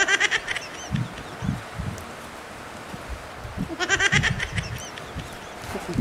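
Goat bleating, a short trembling call heard twice: right at the start and again about four seconds in, with soft low sounds in between.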